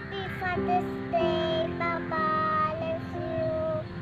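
A young girl singing a song over instrumental backing music, holding several long notes.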